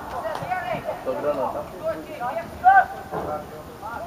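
Voices calling out and talking at a football match, not made out as words, with one louder call a little under three seconds in.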